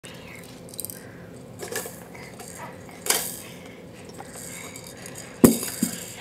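Hard plastic toy pieces knocking and clattering against a plastic activity table as stacking rings are pulled off their peg: a few separate sharp clacks, the loudest one near the end.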